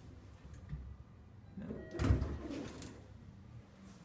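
Mitsubishi elevator arriving at the landing: a short chime-like tone, then the doors start sliding open with a thump about two seconds in and a few clicks.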